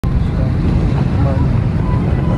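Airliner cabin noise: a loud, steady low rumble from the aircraft's engines and air systems, with faint voices underneath.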